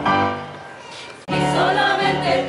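Mixed choir holding a sung chord that fades away. About a second and a quarter in, it cuts abruptly to a louder, different piece of music with a wavering melody.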